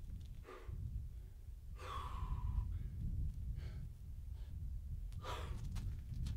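A climber breathing hard with effort, four or five sharp exhalations, one about two seconds in voiced as a short gasp, over a steady low rumble.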